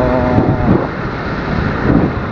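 Wind buffeting the microphone over a steady low rumble of engine and road noise, from a camera riding along in traffic.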